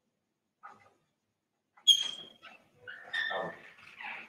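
A few short, high-pitched animal cries, the loudest starting suddenly about two seconds in.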